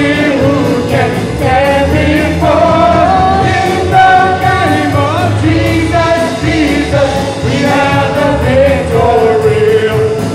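Live worship band: several singers singing a melody together into microphones, backed by electric guitars, bass and drums keeping a steady beat.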